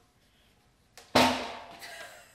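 A heavy glued-up soft maple benchtop is set back down onto folding metal sawhorses: one loud thud about a second in, with a faint click just before it, dying away with a short ring.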